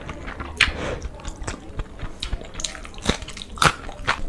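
Close-miked chewing of a mouthful of rice and egg curry, with wet mouth sounds and a few sharp smacking clicks, the loudest about half a second in and twice near the end.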